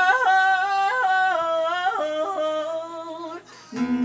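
A woman's voice singing a wordless, unaccompanied line of held notes that step up and down in pitch. Acoustic guitar strumming comes back in near the end.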